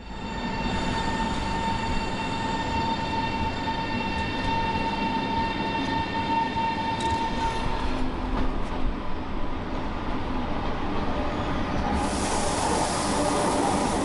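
SBB Re 460 electric locomotive and its coaches running slowly along a station platform: a steady rumble with a high whine that fades a little past halfway, then a rise of rushing hiss near the end as the train passes close.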